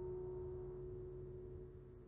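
Cedar-top classical guitar built by Nikos Efthymiou: the last note of a plucked chord left ringing alone as a single faint sustained tone, slowly fading away toward the end.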